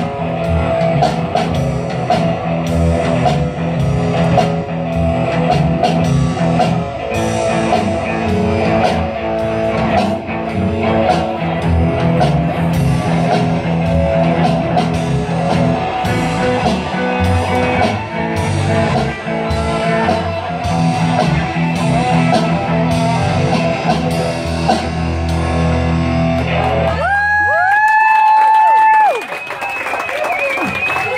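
Live rock band playing amplified electric guitars, bass and drum kit, with a steady drum beat. The song builds to its loudest on a final chord and stops about a second before the end.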